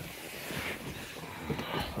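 A person climbing into a car's back seat: clothing brushing and shuffling against the cloth seats, with a few soft bumps.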